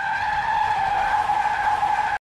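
Car tyres squealing in a skid, a sound effect: a steady, high squeal over rushing noise.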